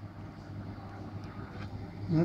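Low steady background hum with faint soft ticks a little past the middle and near the end.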